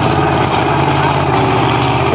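Pro Street drag car's 526-cubic-inch Keith Black big-block V8 idling steadily, a low, even engine note.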